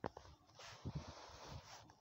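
A sharp knock, then about a second of rustling and scraping with a few soft thumps: a phone being handled and set in place against the truck's engine bay.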